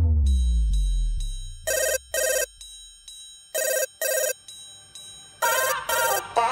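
A telephone ringing as part of a dance track: the beat drops out with a falling pitch sweep, then three double rings follow about two seconds apart, a British-style double ring.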